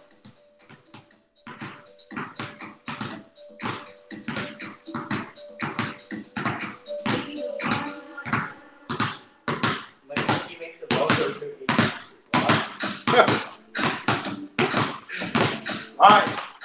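Basketballs dribbled low on a concrete garage floor during a finger-dribbling drill: an uneven stream of sharp bounces from two balls, growing quicker and louder from about ten seconds in.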